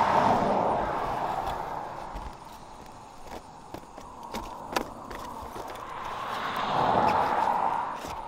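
Cars passing on the road, their tyre noise swelling and fading: one going by at the start, another about seven seconds in. In between, a few sharp clicks and taps as a plastic yard sign is set into the grass.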